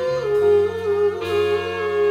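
A man singing a long wordless note that wavers and slides slightly in pitch, over a band's sustained chords and bass, which shift to a new chord a little past halfway.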